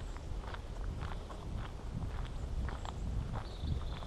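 Footsteps walking on an asphalt road, about two steps a second, over a low rumble. A high, steady trill comes in near the end.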